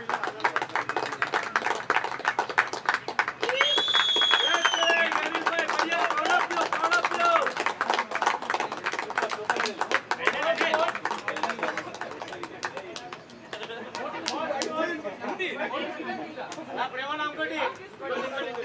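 A group of people clapping by hand over overlapping chatter; the clapping is dense at first and thins out over the last few seconds.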